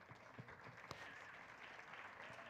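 Faint applause from an audience, an even patter with a few light knocks.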